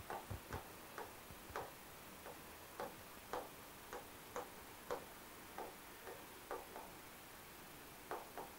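Stylus tapping and clicking against the glass of an interactive display screen while handwriting: faint, short ticks at irregular spacing, roughly two a second.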